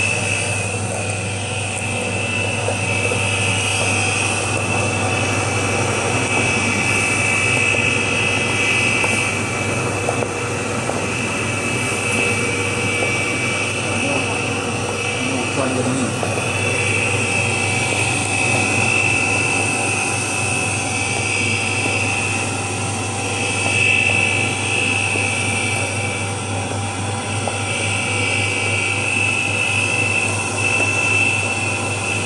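Stainless-steel colloid mill running steadily while grinding soaked tiger nuts into milk, the slurry recirculating from the return pipe back into the hopper. It gives a constant low motor hum with a high whine that swells and fades every few seconds.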